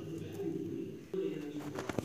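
A pigeon cooing: two low, steady coos, the second starting about a second in.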